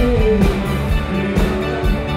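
Live rock band playing through a stage PA: drum kit hits over bass, electric guitar and keyboards, with a held melodic note fading out about half a second in.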